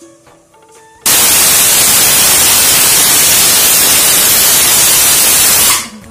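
Aluminium pressure cooker's whistle going off on a gas stove: a loud hiss of steam escaping past the weight valve, starting suddenly about a second in and stopping abruptly after about five seconds. It is the last of the four whistles awaited, the sign that the contents are cooked.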